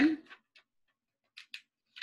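A woman's speaking voice trails off at the start, followed by a pause of dead silence broken by a few faint short clicks before she speaks again.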